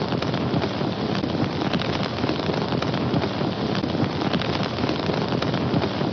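Sound effect of a fire crackling: a steady, dense crackle.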